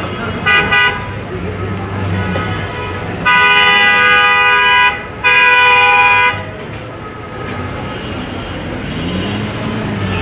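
Vehicle horn honking: two quick toots about half a second in, then two long blasts of about a second and a half and a second, over a steady rumble of street traffic.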